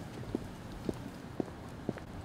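Footsteps on pavement at a walking pace: four even steps, about two a second.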